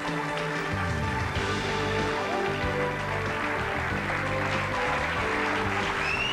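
Television talk show opening theme music, instrumental with shifting bass notes.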